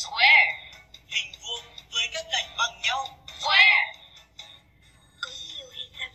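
Recorded voice played from a talking reading pen, saying the English word "square" and then a few more words, with music.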